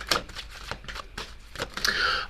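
A deck of tarot cards being shuffled by hand: a run of light, irregular clicks of card against card.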